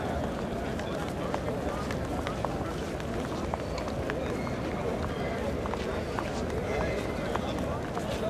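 Busy crowd hubbub: many voices talking at once, none standing out, with scattered short clicks of footsteps on the stone paving.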